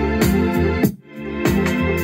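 Music with a steady beat and keyboard sounds playing from a Tribit StormBox 2 Bluetooth speaker; about a second in it cuts out briefly and fades back in as the equalizer preset is switched in the app.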